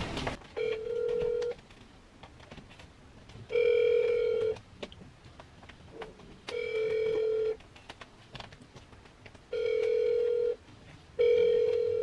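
Ringback tone of an outgoing phone call, heard through a smartphone's speaker. A steady mid-pitched beep about a second long repeats roughly every three seconds, five times, with the last one coming a little sooner.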